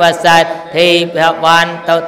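An elderly Buddhist monk's voice intoning a chant into a microphone, held on a near-steady pitch with drawn-out syllables in a sing-song rhythm.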